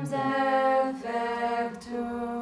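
Voices singing a slow hymn a cappella, long held notes moving in steps, with a short break for breath about a second in: a hymn sung at Benediction before the Blessed Sacrament.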